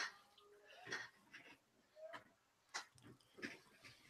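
Near silence: faint background room tone with a handful of faint, short noises at irregular intervals.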